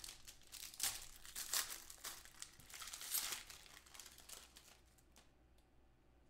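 Trading-card pack wrapper being pulled open and crinkled by hand: a run of crackly crinkles that die away about four and a half seconds in.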